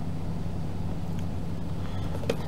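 A steady low hum with faint background noise, unchanging throughout.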